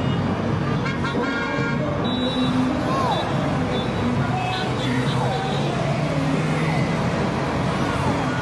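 Traffic-jam soundscape: a steady rumble of idling and crawling cars, with a car horn honking about a second in and a few short sliding-pitch sounds later on.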